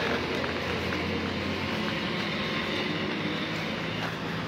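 Steady drone of road traffic: a low vehicle engine hum with road noise.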